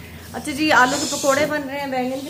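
A woman speaking, with a short hiss under her voice from about halfway through the first second.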